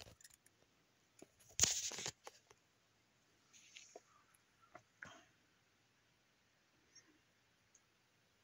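Handling noises: a short rustle about two seconds in, then scattered light clicks and taps.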